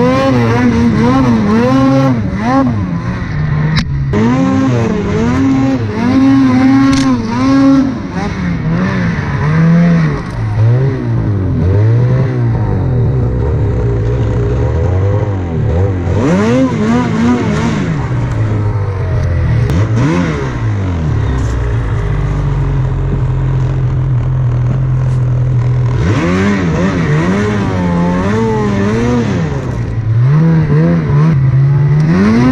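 Snowmobile engine revving up and down over and over as the sled is ridden through deep powder, the pitch rising and falling every second or so. It settles into a steadier, lower drone for a few seconds twice, around the middle and again in the last third, before revving again near the end.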